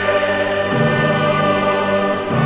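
Choral music with orchestra: a choir singing long held chords that move to a new chord about a second in.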